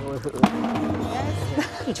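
Acoustic guitar knocked over: a sharp knock on its wooden body about half a second in, then its strings ringing on.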